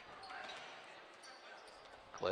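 Faint gym sound with a basketball being dribbled on a hardwood court.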